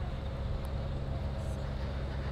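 Wind buffeting the microphone outdoors as a steady low rumble, with a faint steady hum underneath.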